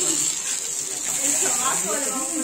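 Pupusas sizzling on a hot flat griddle: a steady high hiss, with faint voices underneath.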